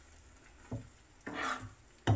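Perforated metal spoon stirring and scraping thick, coarse ground ragi-and-rice batter in a frying pan. There are two scrapes: a short one before the midpoint and a longer, louder one just after it.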